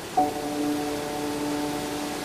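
Soft background music holding one steady, sustained note with its overtones, unchanging throughout.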